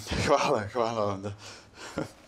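Only a man's voice: a quick sharp breath, then about a second of voiced talk or laughter.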